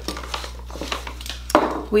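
Small clinks and taps of metal room-spray bottles being handled and knocked against each other, with one louder knock about three-quarters of the way through.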